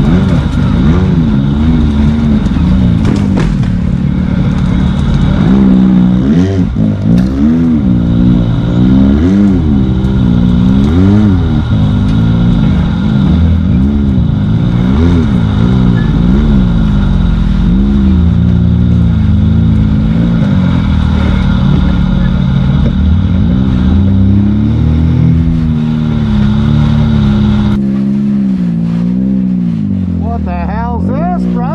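An off-road vehicle's engine revving up and down again and again while it is driven along a rough dirt trail, its pitch rising and falling every second or two. Near the end the sound changes abruptly to a steadier, lower engine note.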